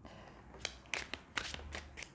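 A deck of tarot cards being shuffled by hand: a run of about six sharp, irregular card snaps starting about half a second in.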